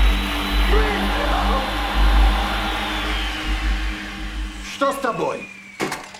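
An electric power tool's motor running at high speed, then slowing with a falling whine about three seconds in; the motor noise stops about five seconds in while the whine fades.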